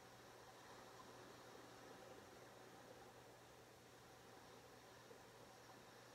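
Near silence: faint steady hiss and a low hum of room tone.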